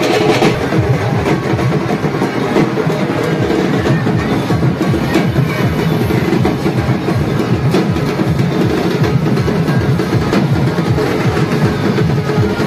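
Loud, continuous music dominated by drumming, with a dense, rapid beat.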